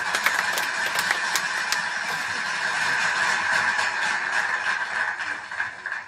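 Applause and cheering, with sharp handclaps in the first second or so, falling away near the end.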